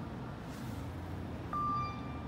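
A single electronic ding from a Kone elevator hall lantern about one and a half seconds in, a clear tone that rings on and fades, signalling a car arriving. It sounds over a steady low background hum.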